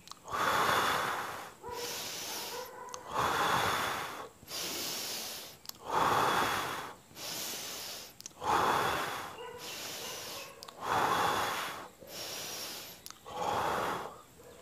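A man breathing deeply and audibly in and out through a slow breathing exercise done with hands pressed at the navel: about six full breaths, each with a louder and a softer half.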